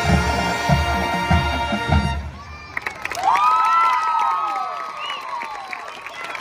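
A marching band plays a loud held chord over drum hits, then cuts off about two seconds in. After a brief pause the crowd in the stands breaks into cheering, with whoops and shouts.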